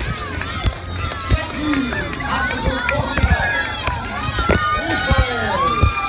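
Many spectators' voices calling out and cheering at once, over the regular footfalls and jolting of a runner carrying the recording phone.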